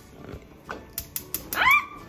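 Gas stove igniter clicking rapidly, several sharp clicks a second from about a second in, as a burner is lit. Near the end a short, high, rising cry from a household pet is the loudest sound.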